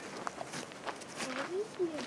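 A person's footsteps on dry grass and dirt, a few soft irregular steps. A faint voice comes in during the second half.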